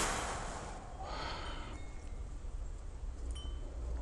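A short rush of noise at the start, then faint, scattered high ringing tones like chimes over a steady low hum.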